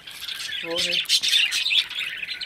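Budgerigars chattering and chirping, a dense, steady high twittering.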